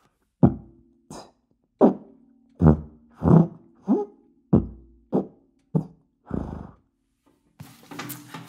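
E-flat sousaphone played with beatboxed percussive sounds buzzed through the mouthpiece: about ten punchy bass-drum and hi-hat style hits in a steady rhythm, roughly one and a half a second, with a held low note sounding between them. It stops about a second before the end.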